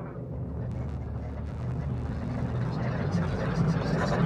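Electroacoustic rumble with a hiss above it, part of the piece's electronic sound, swelling steadily louder.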